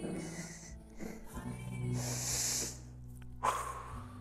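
Background music holding a steady low note, with a woman's audible breath out through a close microphone about two seconds in and a shorter breath near the end.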